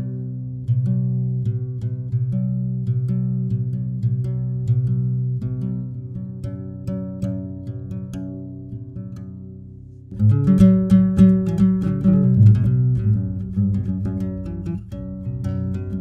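Acoustic guitar playing the instrumental opening of a gnawa song: a plucked riff over a repeating low bass figure that slowly grows quieter, then about ten seconds in turns suddenly louder and fuller with harder-picked notes.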